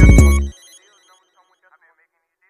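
Hip-hop beat with heavy bass and drum hits, cutting off abruptly about half a second in, leaving only a faint, high, repeated ringing-like sound.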